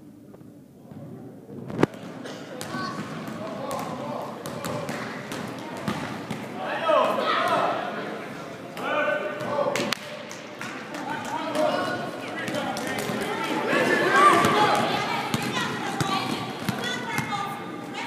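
A basketball bouncing on a hard gym floor amid shouting from players and spectators, echoing in the hall, with a sharp thud about two seconds in.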